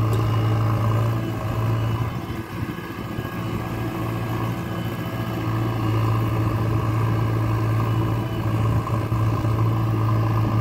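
JCB backhoe loader's diesel engine running steadily while the backhoe arm digs soil. The engine eases off about two seconds in and picks up again a few seconds later.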